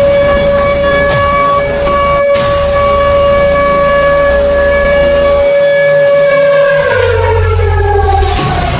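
A siren wailing on one steady pitch with overtones, dropping in pitch near the end, over a low rumbling bass.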